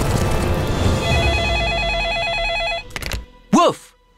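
Music gives way, about a second in, to a telephone ringing with a rapid electronic warble between two pitches. The ring stops after about two seconds, and a short spoken word follows near the end.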